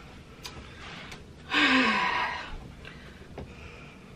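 A woman's short breathy sigh, falling in pitch, about one and a half seconds in, with a few faint clicks around it.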